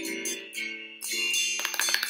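Plucked-string instrumental music, single notes picked one after another and left to ring.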